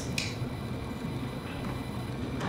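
Quiet room tone with one brief, faint click about a quarter second in.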